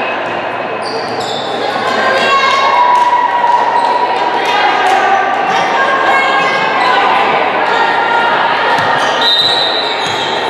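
Volleyball players' voices calling and cheering, echoing in a gymnasium between rallies, with a volleyball bounced a few times on the hardwood floor.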